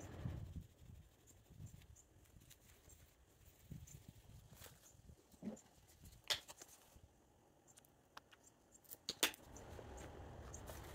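Faint rubbing of a microfiber applicator pad working scratch-remover cream into car paint in the first second or so, then quiet handling with a few sharp clicks, the loudest cluster near the end.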